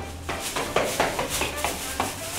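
Quick footsteps coming down hard stairs, several steps a second, starting about half a second in.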